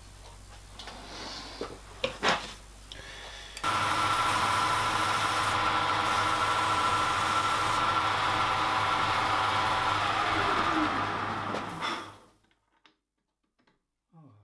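Metal lathe running with its three-jaw chuck spinning: a steady mechanical hum with a faint high whine that starts suddenly about four seconds in, then winds down in pitch and stops about eight seconds later. Before it starts there are a couple of short metal knocks.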